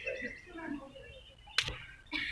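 Faint, scattered murmur of voices from a group outdoors, with one sharp click about one and a half seconds in.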